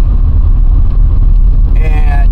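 Steady low rumble of engine and road noise inside a moving car's cabin. A voice starts again just before the end.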